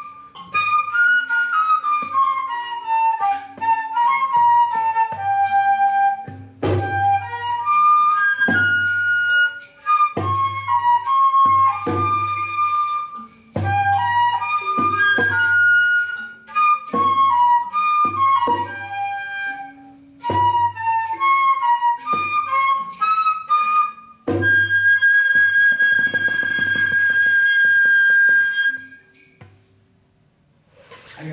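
Side-blown flute playing a free, flowing melody of quick running phrases, with low thuds under many of the phrases. It ends on one long held high note that stops shortly before the end.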